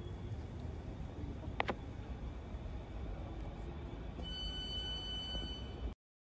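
Low, steady rumble of a train standing at a station platform, with a single sharp click about one and a half seconds in. A steady high-pitched tone comes in about four seconds in and holds until the sound cuts off abruptly.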